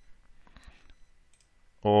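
A few faint clicks of a computer mouse in a quiet pause.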